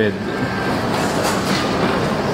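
Steady background noise of a busy shopping-mall interior: an even, constant wash of sound with no distinct events.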